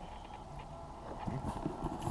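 Cardboard boxes and packing paper being handled and moved about. Irregular soft knocks and rustling start about a second in.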